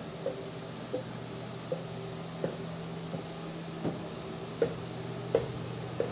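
Footsteps climbing a steep wooden ladder-stair, one knock about every three-quarters of a second, over a steady low hum.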